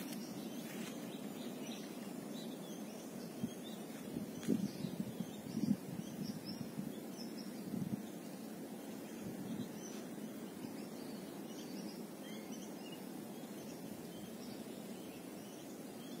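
Outdoor field ambience: a steady low background noise with faint, scattered bird chirps, and a few soft thumps around four to eight seconds in.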